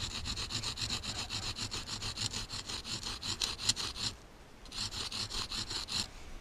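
Dry spruce stick scraped quickly back and forth against the rough edge of a rock, rasping a notch into the wood. The strokes come fast and even, stop briefly about four seconds in, then start again.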